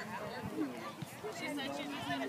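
Background voices of people talking and calling out at a distance, a loose babble of chatter with no one voice close.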